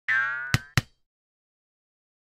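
Cartoon bouncing-ball sound effect: a pitched boing that dies away over about half a second, followed by two quick sharp taps.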